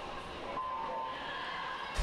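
Steady background hum of an indoor swimming pool hall, with a short electronic start tone a little after half a second in that sends the swimmers off the blocks. A brief sharp sound comes at the very end.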